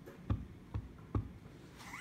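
A clear acrylic stamp block with a photopolymer stamp tapped onto a Basic Gray ink pad to ink it: three soft knocks about half a second apart.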